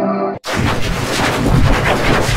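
Music with several held tones breaks off early on. After a short dead gap, loud, harsh crackling distortion noise with a deep rumble takes over: the logo's soundtrack mangled by heavy audio effects.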